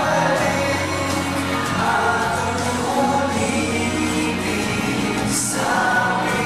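Three male singers singing together into microphones over live band accompaniment, recorded live from the audience.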